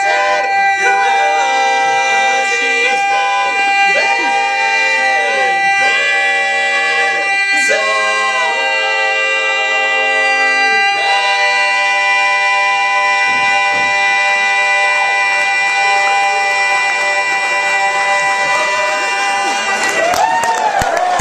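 Barbershop quartet singing a cappella, the tenor holding one long, unbroken high note while the three lower voices move through chord changes beneath it. From about eleven seconds in, all four voices hold a single sustained chord.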